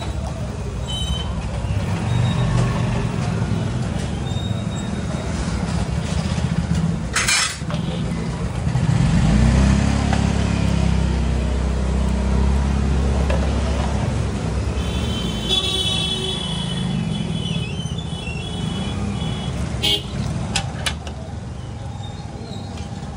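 Street traffic: motor vehicle engines running by as a steady low rumble, swelling about halfway through, with a brief horn a little later.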